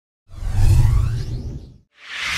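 Channel-logo intro sound effect: a whoosh over a deep rumble that swells in about a quarter second in and fades away before the end.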